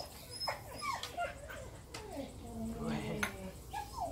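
Dog whining in several short, rising and falling whimpers.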